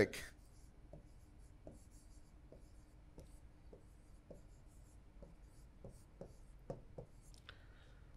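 A stylus writing a word by hand on an interactive touchscreen display: faint, irregular ticks as the pen tip taps down for each stroke, with light scratching as it slides.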